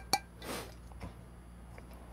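Two light clinks of a glass coffee server being turned in the hands, the first with a short ring, then faint handling ticks.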